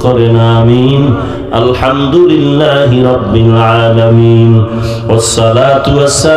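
A man's voice chanting an Islamic prayer of supplication (munajat) into a microphone, in long drawn-out melodic phrases with brief breaks between them.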